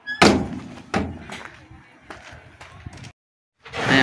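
Galvanised steel box trailer being handled at its tailgate: a loud metallic bang just after the start, a second thud about a second later, then a few lighter knocks. The sound cuts out briefly near the end.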